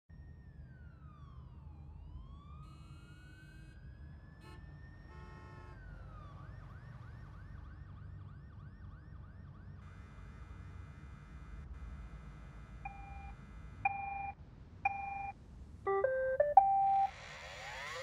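Electronic tones gliding slowly down and up in pitch, then three short electronic beeps about a second apart and a quick run of beeps at several pitches. Near the end a robot vacuum's motor starts up with a rising whoosh.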